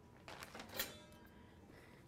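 A short rustle of something being handled, lasting about half a second and starting shortly after the start, over faint room tone.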